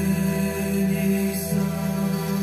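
Slow devotional music: one long sung note held steady through, over a sustained low accompaniment.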